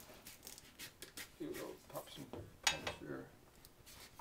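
Handling noises of a fabric-covered elevator being lifted and shifted on a workbench: light clicks and scrapes, with one sharp click about two-thirds of the way through. Brief low muttering is heard between them.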